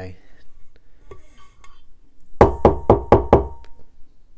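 Glitter-coated stainless steel tumbler knocked about five times in quick succession, with a faint ringing tone under the knocks, as excess loose glitter is shaken off it.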